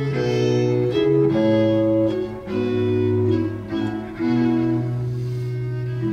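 Baroque chamber ensemble playing an instrumental passage: two violins and viola da gamba with a chamber organ, in sustained notes that change every half second or so. There are brief dips in loudness between phrases about two and a half and four seconds in.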